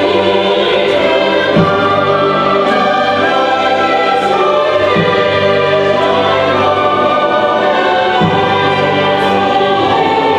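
Mixed SATB choir singing with orchestral accompaniment in a classical choral work, in held chords whose bass notes change about every three seconds.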